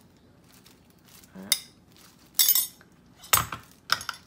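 A few separate sharp clinks and knocks against a stainless steel mixing bowl as minced garlic is tipped and scraped out of a small plastic container onto marinating chicken, with a brief scrape about halfway through.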